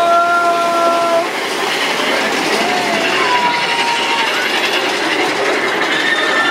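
Big Thunder Mountain Railroad mine-train roller coaster rattling and clattering steadily along its track. A long held high tone with overtones sounds in the first second, and a few shorter rising-and-falling tones follow later.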